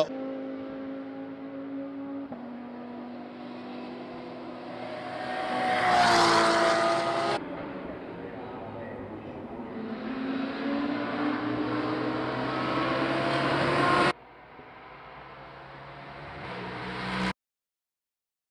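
GT3 race car engines at speed in a few edited clips: one car goes by loudly about six seconds in with its engine note dropping, then another accelerates with its pitch climbing. The sound breaks off abruptly at each cut and stops just before the end.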